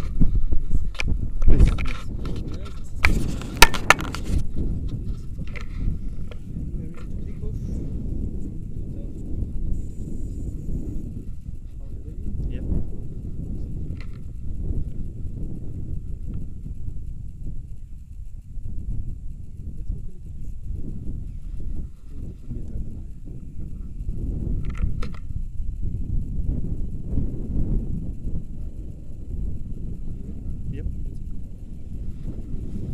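Wind buffeting an action camera's microphone, an uneven low rumble. In the first few seconds there are several sharp knocks and clicks of the camera and harness gear being handled.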